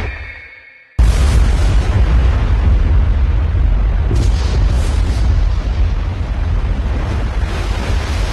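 Dramatic sound effect: a whoosh fading away, then about a second in a sudden loud blast that runs on as a steady, deep rumble.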